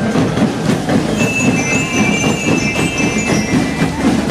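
School marching band playing: a dense, steady drumbeat with high bell-lyre notes ringing over it from about a second in.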